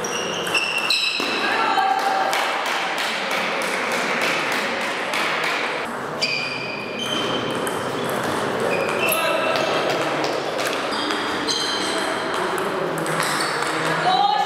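Table tennis ball clicking back and forth off bats and table in doubles rallies, ringing in a large hall, with short high squeaks of sports shoes on the wooden floor between hits.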